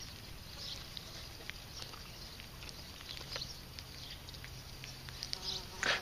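Flies buzzing in a low steady drone, with scattered small clicks and taps from box turtles feeding on a plastic tray.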